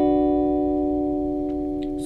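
A clean electric guitar chord, played on a Telecaster-style guitar, left to ring and slowly fade. It is most likely the B minor that closes the demonstrated fill.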